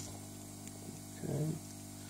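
A steady low hum, with one short spoken word about a second in.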